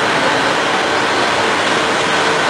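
A loud, steady rush of breath noise close to the microphone, an even hiss with no voice in it, during a demonstration of a deep breathing exercise.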